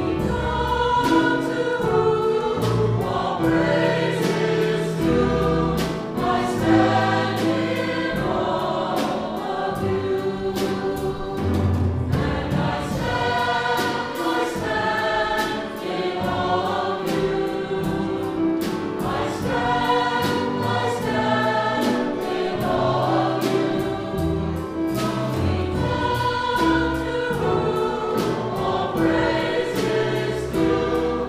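Church choir singing with conductor and small instrumental ensemble accompanying, held bass notes and a steady beat under the voices.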